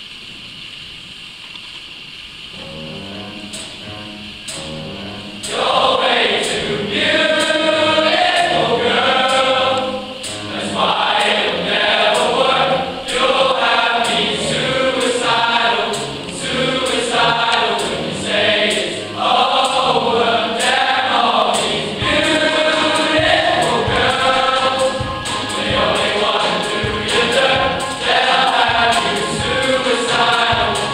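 A choir of schoolboys singing. It comes in softly a couple of seconds in and swells to full voice at about five seconds.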